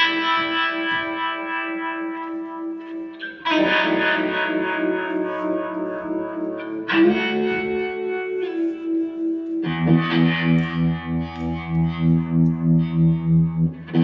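Electric guitar played live through distortion and echo effects: long sustained chords that shift every few seconds, taking on a pulsing throb about twice a second near the end.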